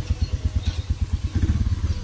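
Tuk-tuk (auto-rickshaw) engine idling, a steady low putter of about ten pulses a second.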